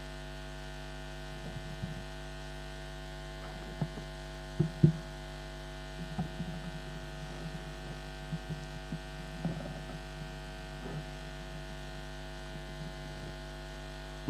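Steady electrical mains hum in the public-address feed, with scattered soft knocks and bumps as the podium microphone is handled and adjusted. The loudest knocks come in a pair about five seconds in.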